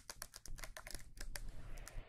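Long fingernails tapping and clicking quickly on a plastic spray bottle, light clicks several times a second.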